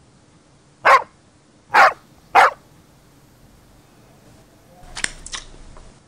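A dog barking three times, short loud barks spaced under a second apart, then a few softer clicks near the end.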